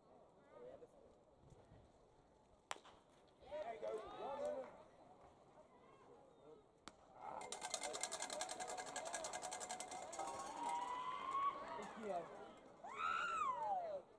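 A pitched baseball pops into the catcher's mitt about three seconds in, followed by a short burst of shouting voices. A few seconds later, music plays over the ballpark PA for several seconds, and near the end comes a high call that rises and falls.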